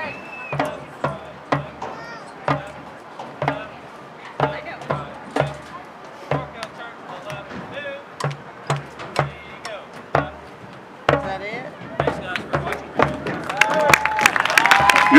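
Marching band drum line playing a steady marching cadence: bass drum beating about twice a second with sharp snare clicks between the beats.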